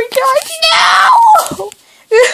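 A child's voice screaming and wailing in anguish: short cries, then one long, loud scream that falls in pitch and breaks off about a second and a half in.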